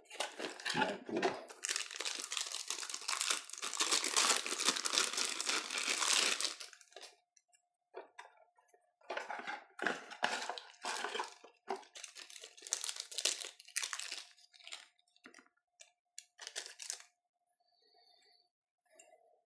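Plastic packaging being torn open and crinkled: a dense tearing rustle for about five seconds, then a string of short separate crinkles.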